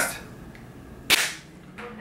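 A single sharp crack about a second in, with a short ring after it.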